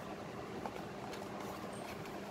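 Steady low background hiss with a faint hum, and a few soft handling sounds as a cardboard toy box is touched and picked up.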